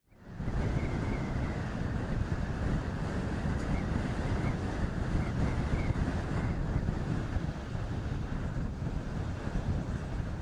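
Steady wind buffeting the microphone: a low, fluctuating rumble and rush that runs without a break.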